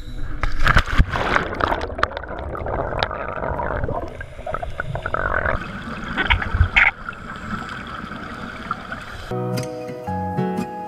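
Water splashing, then muffled underwater gurgling and bubbling from scuba divers' exhaled breath. Acoustic guitar music starts near the end.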